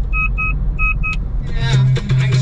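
Low, steady road and engine rumble inside a moving car, with four short electronic beeps in two pairs during the first second. Music comes back in near the end.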